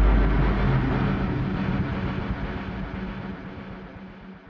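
Fading tail of a deep boom in an animated logo sting: a low rumble under a wash of noise that dies away steadily.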